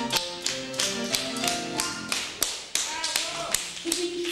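Instrumental accompaniment to a song: held string-like notes with sharp percussive taps about three a second. About halfway the held notes drop away, leaving mostly the taps.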